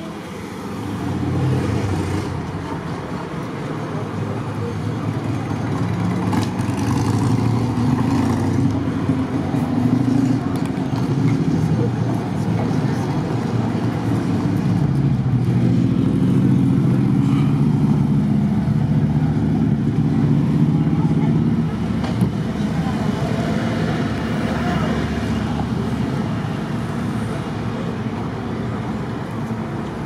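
Street traffic: motor vehicles driving past, with a motorcycle engine running on the road. The sound grows louder early on and is loudest a little past the middle.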